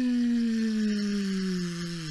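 A man's voice making one long, slowly falling vocal sound effect, imitating a paper airplane gliding down.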